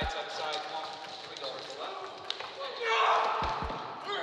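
Men's voices shouting and calling out in a gym hall as two wrestlers grapple on a mat, rising into a louder burst of yelling about three seconds in. Dull thuds on the mat come at the start and twice in quick succession near the end.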